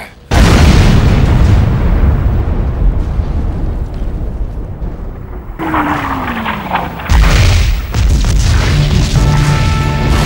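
Sound effect of a heavy coastal-fortress cannon firing: a loud boom just after the start that rumbles and dies away. About six seconds in a falling whistle is heard, then a second loud explosion as the shell strikes the warship.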